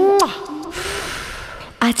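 A voice's gliding note as the backing music cuts off, then a breathy hiss lasting about a second, like a sharp in-breath, before a spoken word near the end.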